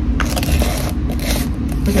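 A plastic screw lid scraping against a plastic jar of body scrub as it is twisted back on, in a few short rasps.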